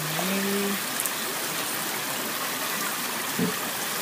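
River water running through a concrete intake channel and gate, a steady even rush.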